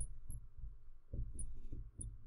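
Fluorescent marker writing on a glass lightboard: a run of soft, faint low knocks from the pen strokes, with a few tiny high squeaks of the tip on the glass.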